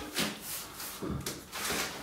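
A person moving about a small empty room with a hand-held camera: faint shuffles and a few soft knocks, as of footsteps and the camera being handled.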